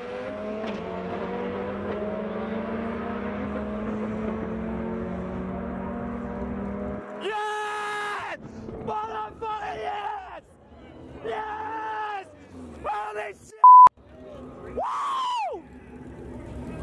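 Turbocharged Honda B18 drag car accelerating away on a quarter-mile pass, its engine note climbing steadily for about seven seconds. Then excited shouting and yelling, broken by a short loud beep.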